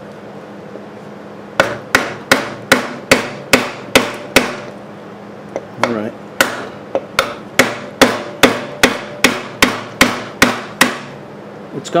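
Hammer blows on a wooden block set against two bolts in the connecting rod of an antique Briggs & Stratton 5S engine, driving the stuck piston down out of the cylinder. The blows come steadily at about two to three a second in two runs, starting over a second in, with a short pause between the runs.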